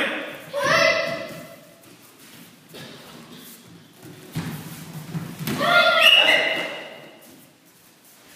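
Two high-pitched children's karate shouts (kiai) during sparring: one held for about a second just after the start, and a longer one around six seconds in. Between them come thuds of bare feet and blows on foam mats.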